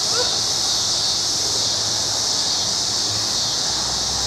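Steady high-pitched buzzing drone of insects in summer vegetation, with a couple of faint short chirps near the start.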